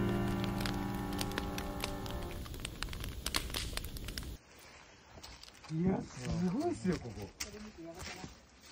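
A held keyboard chord fading away over the pops and crackle of a burning wood fire; about four seconds in both cut off abruptly, and a person's voice is heard briefly near the end.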